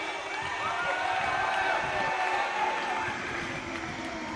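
Crowd cheering and shouting, several voices calling out at once over a steady hubbub that eases off near the end.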